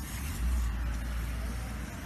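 Steady outdoor street noise: a low rumble under an even hiss, like road traffic.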